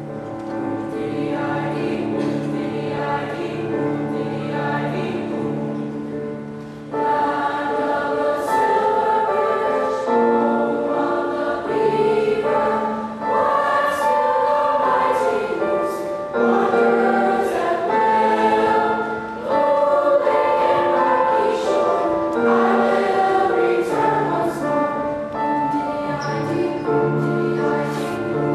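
Seventh-grade middle school choir singing. The singing is soft at first and becomes clearly louder about seven seconds in.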